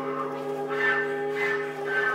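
Contemporary chamber music: a low, bell-like percussion tone, struck just before, keeps ringing steadily. Shorter, higher notes swell over it three times.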